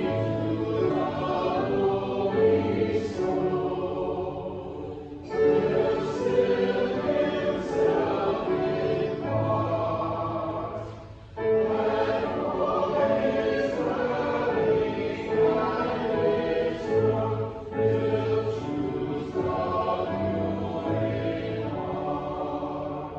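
Church choir and congregation singing a hymn with pipe organ accompaniment, in long phrases with short breaths about five and eleven seconds in.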